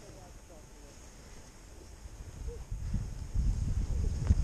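Wind rumbling on a skier's action-camera microphone during a descent through powder, building into heavy buffeting in the last second or so.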